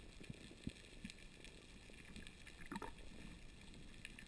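Faint underwater ambience heard through a camera's waterproof housing: a low hiss with scattered small clicks and a slightly louder crackle a little before three seconds in.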